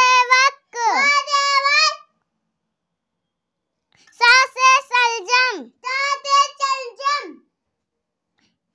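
A child's high voice chanting the Hindi alphabet in a sing-song, letter followed by a word, in two phrases with a pause of about two seconds between them.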